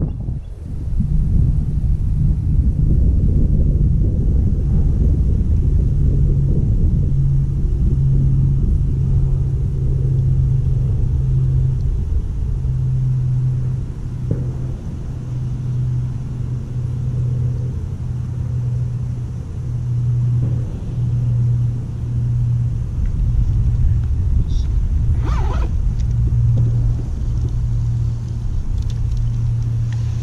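A steady low motor drone, wavering slightly in pitch, over a constant low rumble.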